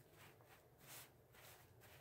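Near silence: room tone, with faint rustling from hands handling a bundle of rolled disposable diapers, a little louder just before halfway through.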